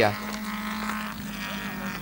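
Touring race cars' engines running as the cars drive through a curve, a steady drone under the race footage.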